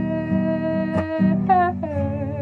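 A woman singing a long held "oh" over strummed acoustic guitar. About one and a half seconds in, her voice slides down to a new note that wavers slightly.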